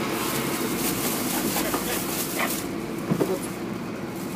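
Steady engine hum and rumble inside a bus cabin, with faint voices in the background.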